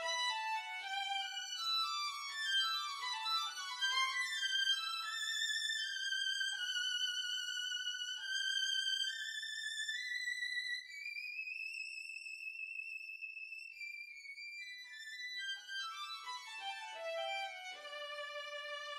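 Solo violin line from a string trio, unaccompanied: quick rising and falling runs, then longer notes that climb slowly to a long held high note, before fast falling runs return near the end.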